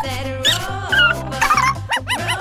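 Background music with several short barks from a small dog laid over it.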